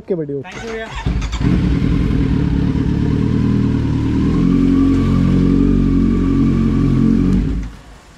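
Kawasaki Z900's inline-four engine running at low speed as the motorcycle is ridden slowly, a steady exhaust note close to the bike, which drops away sharply near the end.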